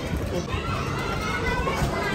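Indistinct voices, a child's among them, over a steady low background hum in a shop.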